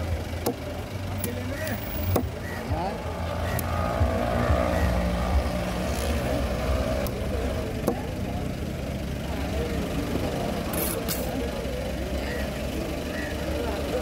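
A motor vehicle's engine running steadily nearby, with a few sharp knocks scattered through, likely a knife striking the wooden cutting board as the tuna is cut.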